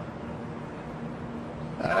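Muffled, unintelligible voice of a free-falling skydiver coming over a hissing radio link with a steady low hum.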